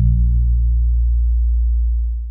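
Closing bass note of a lo-fi hip hop track: a deep, pure, steady tone that starts at once and holds.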